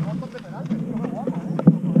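Mountain bike tyres crunching and rattling over loose gravel and rock on a steep climb, with faint shouting voices and a sharp knock about one and a half seconds in.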